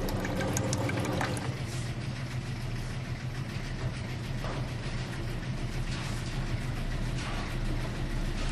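Steady low hum of launderette washing machines and dryers running. A few clicks and rattles near the start come from the coin-operated soap-powder dispenser as the paper cup fills.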